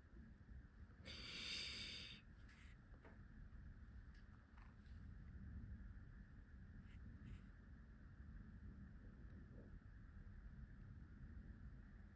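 Near silence: faint room tone, with a soft breath through the nose about a second in and a few faint light clicks of steel tweezers on the parts of a watch movement.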